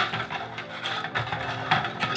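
Hollow 3D-printed plastic hexagon shells clattering and knocking against each other and the table as they are unstacked and set down, a loud knock right at the start and many quick irregular clicks after it.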